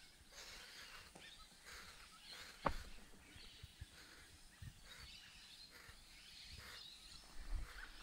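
Mountain bike rolling down a dry, stony dirt trail, its tyres crunching faintly over loose dirt and stones. There is one sharp knock of the bike hitting a rock about two and a half seconds in, and a louder rumble near the end as the ground gets rougher.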